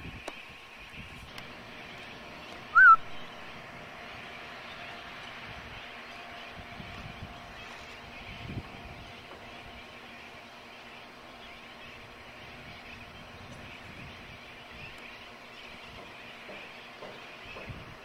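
Steady outdoor hiss, with one short, loud chirp about three seconds in that rises and falls in pitch, like a bird call.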